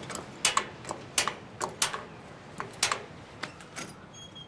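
Gas grill control knobs being turned, giving a series of about eight sharp, irregularly spaced metallic clicks.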